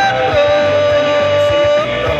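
Male singer performing a modern Nyishi rock song live through a microphone and PA, backed by an amplified band. He holds one long sung note that shifts pitch just after the start and falls away near the end.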